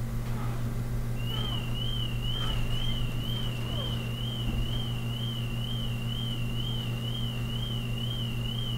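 A high electronic warbling tone, wavering up and down about three times a second, that starts about a second in and holds steady, over a low steady hum.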